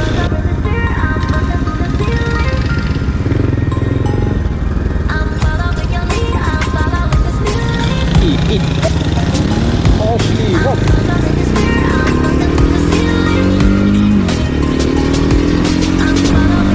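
Background music with a melody of short notes over a motorcycle engine. In the second half the engine's pitch climbs and drops back several times as the bike accelerates up through the gears.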